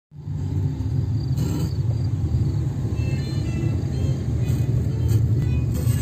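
A car driving along a road, heard from inside the cabin: a steady low engine and road rumble.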